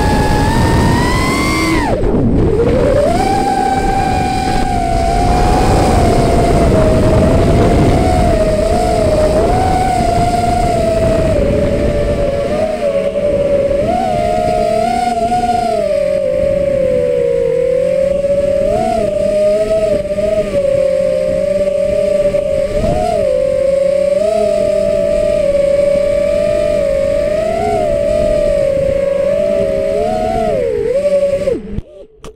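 Small FPV quadcopter's electric motors whining, the pitch rising and dipping with the throttle, with a sharp drop and climb about two seconds in. Wind rushes over the onboard camera's microphone through roughly the first twelve seconds.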